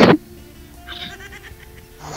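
A person's voice ending in a drawn-out, falling tone right at the start, then a low, steady background with faint sustained tones.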